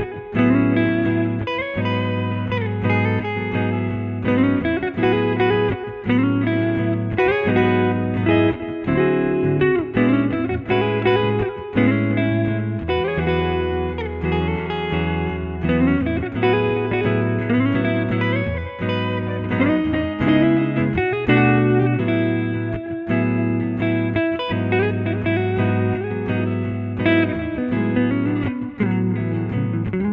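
Hollow-body electric guitar playing a melodic solo line with some sliding notes, over a looped backing of sustained chords and bass notes from the same guitar.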